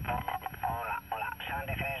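Soviet R-323 military tube receiver reproducing a distant radio operator's voice signing off with "73", heard over a sporadic-E skip opening. The voice is thin, with the low end cut away as radio audio sounds through the set's speaker.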